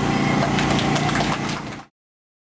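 An idling engine's steady hum with a few light clicks over it, fading out suddenly near the end.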